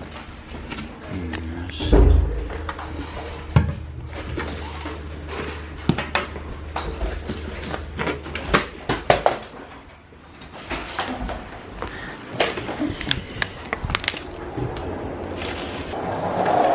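Bags and luggage being handled while a room is packed up: a string of knocks, clunks and rustles, the loudest about two seconds in. Music plays in the background.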